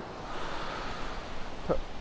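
A person's long, forceful exhale through the mouth, lasting about a second and a half, pushed out as the abdominal muscles contract to curl the upper body up in a Pilates crunch.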